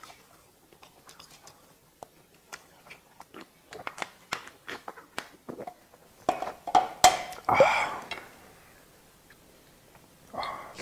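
Close-miked eating sounds: chewing and small clicks, with chopsticks tapping a metal pot. About seven seconds in comes a sharp click, then a louder breathy sound lasting about half a second.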